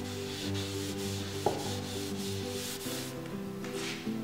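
A cloth rag wiping oil finish onto a wooden board, cloth rubbing over wood in repeated back-and-forth strokes that ease off near the end.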